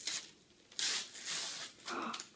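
Wrapping paper being torn off a gift in a couple of short rips about a second in.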